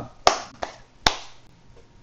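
Three sharp percussive taps. The first, about a quarter second in, is the loudest, a faint one follows, and the last comes about a second in; each dies away quickly.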